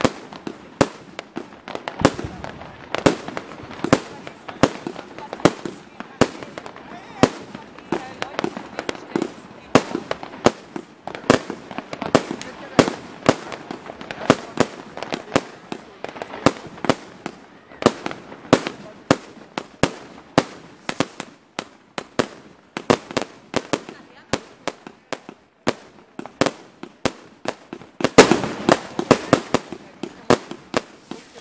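Aerial fireworks going off overhead: a fast, continuous run of sharp bangs and crackles, several a second, as shells burst one after another. A louder cluster of bangs comes near the end.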